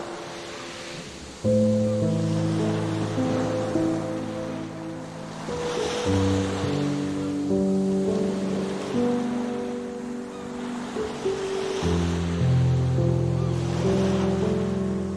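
Slow, calm music of long held chords that change every few seconds, over ocean waves washing onto a beach. The wave noise swells and fades about every six seconds.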